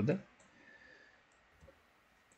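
A few faint, sparse clicks of a computer mouse, after a man's voice trails off at the very start.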